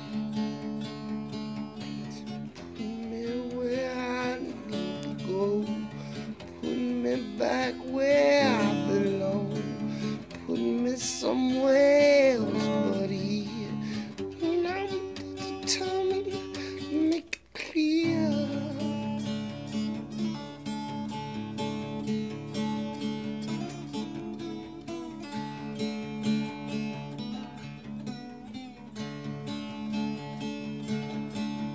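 Acoustic guitar played in a steady chord pattern. Over the first half, a wordless vocal melody rises and falls over the guitar and is the loudest part. The sound cuts out for a moment a little past halfway, then the guitar carries on alone.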